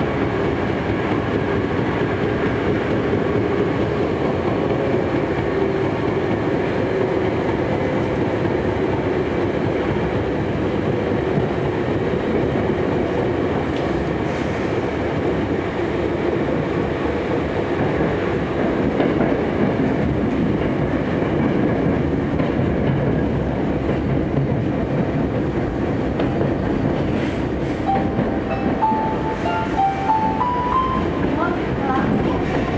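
Hankyu 7300 series commuter train running through a subway tunnel, heard from inside the car: a steady noise of wheels on rail and running gear, with a faint stepped tone rising near the end.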